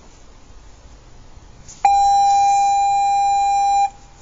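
A loud, steady electronic beep at one pitch, about two seconds long, starting abruptly about two seconds in and cutting off suddenly.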